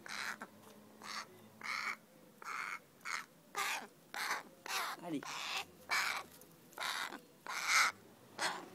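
A crow cawing over and over, a dozen or so short harsh calls of similar shape, each coming about half a second to a second after the last.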